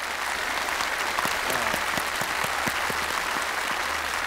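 A group of people applauding steadily: many hands clapping together.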